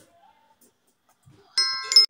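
A faint yawn, then about a second and a half in two bright ringing notes from a xylophone app on a phone, the second just before the end.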